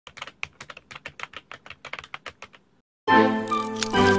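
Keyboard typing clicks, a sound effect as a title types itself out letter by letter, for about two and a half seconds. After a short gap, a loud music hit with held tones starts about three seconds in.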